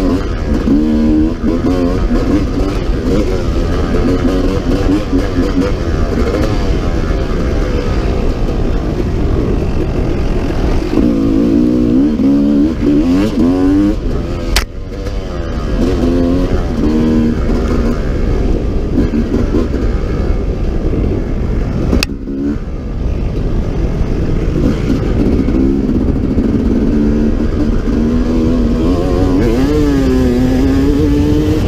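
A 1995 Honda CRE 250 two-stroke enduro motorcycle being ridden, its engine revving up and down as the rider works the throttle, the pitch rising and falling throughout. Two sharp clicks cut in, about halfway through and again some seconds later, each followed by a brief dip in the engine sound.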